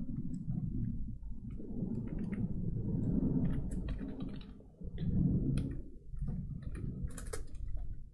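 Computer keyboard typing: scattered, irregular keystrokes with a low rumble underneath.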